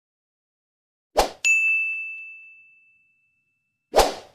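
Editing sound effects: a short swoosh, then a single bright bell-like ding that rings out and fades over about a second and a half, and another swoosh near the end.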